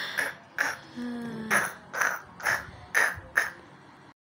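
A person's short, breathy vocal sounds, coming about twice a second, with a brief hummed tone about a second in.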